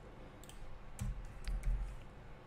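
Computer keyboard keystrokes: a few separate, faint clicks as text is typed.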